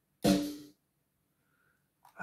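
A single drum hit from a sample played back by an Akai Z4 sampler, starting sharply and ringing out over about half a second.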